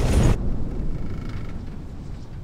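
Ski lift cable machinery, the haul rope running over its sheave wheels, with a low rumble that slowly fades. A loud rushing noise cuts off about a third of a second in.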